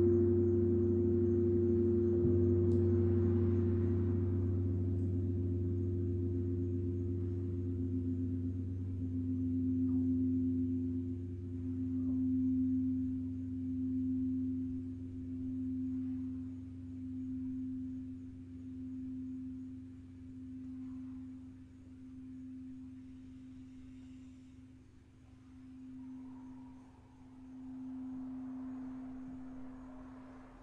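Gong and singing bowls ringing out after being struck: a low hum and a sustained middle tone slowly fade, the middle tone wavering in slow regular pulses about every second and a half.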